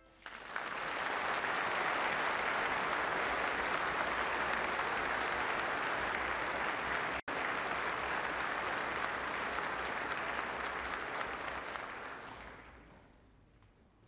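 Large audience applauding in a hall, starting just as a brass fanfare ends, holding steady for about twelve seconds, then dying away near the end. A momentary dropout in the sound a little past halfway.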